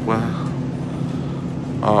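Steady low hum of a supermarket's refrigerated produce display case, its fans and cooling running, over faint store background noise.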